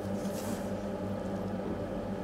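Steady low background hum of the room, with a faint brief rustle from gloved hands handling the plastic and metal cell parts about half a second in.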